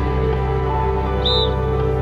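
Background music with sustained, held tones over a steady low bass. A single short, high chirp sounds a little over a second in.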